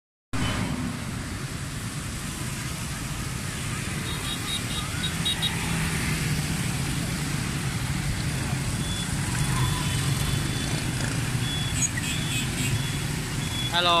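Dense street traffic of motorbikes and cars running through a rain-wet intersection: a steady mix of engine rumble and tyre hiss on the wet road, with a few short high beeps about four seconds in.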